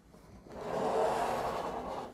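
A solar inverter's case scraping across a tabletop as the unit is turned round. The scrape swells after about half a second and then tapers off.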